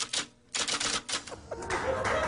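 A rapid run of sharp clicks, close together like typing, followed near the end by a rising wash of noise.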